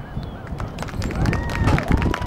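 Scattered clapping from the stands with a whistle and voices. The claps start about half a second in and grow thicker, and a single whistle rises, holds and falls near the end.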